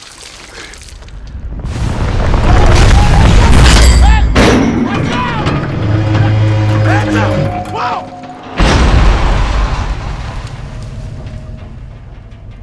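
Steel billboard tower toppling in movie sound design: a deep rumble builds, the metal frame creaks and screeches as it leans over, then a heavy crash about eight and a half seconds in as it hits the ground, with the rumble dying away after.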